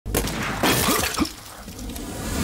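A crash of something shattering, lasting about a second and a quarter, then dying away to a low rumble.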